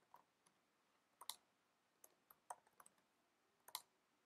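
Faint, irregular computer keyboard keystrokes, about ten separate clicks with some in quick pairs, as code is typed.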